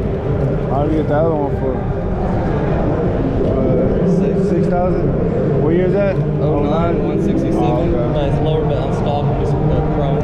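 Voices talking in a large hall, off and on throughout, over a steady low hum.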